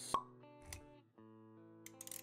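Quiet intro music with sustained notes, punctuated by a sharp pop just after the start and a softer low thump a little later. These are sound effects timed to an animated logo intro.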